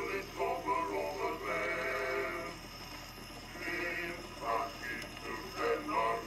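Edison Diamond Disc phonograph playing a 1917 acoustic recording of male voices singing a medley of army camp songs. The sound is thin, with little bass or treble, and softens briefly near the middle.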